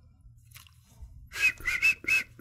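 A man whistling a few short, quick notes through pursed lips, starting about a second and a half in after near quiet.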